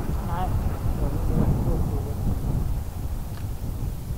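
Wind buffeting the microphone of a camera mounted on a moving tandem bicycle, a steady low rumble.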